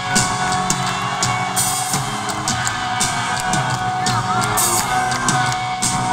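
Rock band playing live in an arena, recorded from inside the crowd: drums with repeated cymbal crashes over sustained guitar and bass. Whoops and yells from the audience rise over the band.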